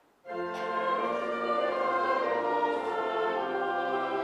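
After a moment's silence, pipe organ and choir with congregation come in together, singing a hymn.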